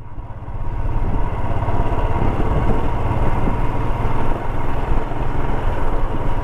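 Motorcycle engine running while the bike rides along a road, growing louder over the first second and then holding steady.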